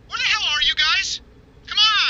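A high-pitched voice making wavering, meow-like calls that bend up and down in pitch: two close together, then another after a short pause near the end.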